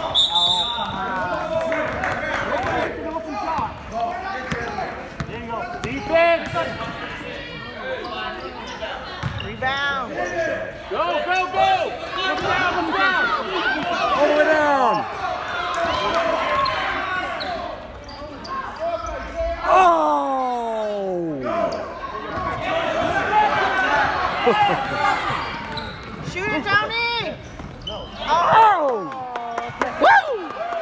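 A basketball being dribbled and bouncing on a gym's hardwood floor, with players' and spectators' voices and shouts carrying through the large hall.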